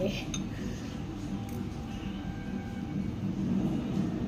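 Metal spoon and fork clinking and scraping against a ceramic bowl while eating, with one sharp click just after the start, over steady low background noise.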